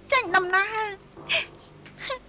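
A woman crying: a drawn-out, wavering sob in the first half, then a short, breathy sob about a second later.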